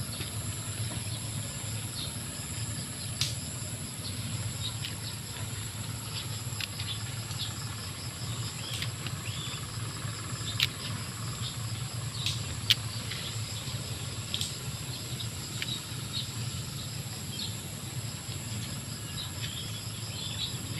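Steady high-pitched insect chorus with a low rumble underneath, over scattered light clicks and scuffs from the fertilizer being handled and dropped by the plants.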